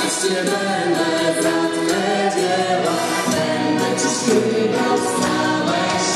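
Live worship song: singing over accordion and electric guitar, with the sound of a church hall around it.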